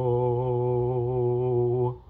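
A cappella hymn singing holding the final word "woe" as one long note with a gentle vibrato, cut off sharply near the end.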